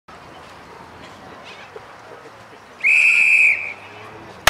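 A single steady, high whistle blast of just under a second, about three seconds in, sounded while the runners hold their set positions for the race start. Faint open-air background before it.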